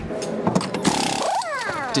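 A race car's engine revs, then falls away in pitch as the car slows.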